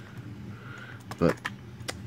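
A few light clicks from fingers handling a clear plastic blister pack on a toy car card, with one sharper click near the end.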